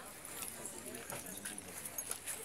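Footsteps on concrete, several short clicks, with faint voices of people talking in the background.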